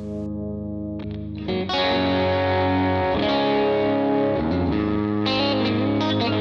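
Electric guitar played direct through a Line 6 HX Stomp multi-effects pedal: held, ringing chords that swell louder and brighter a little under two seconds in and then sustain, changing notes a couple of times.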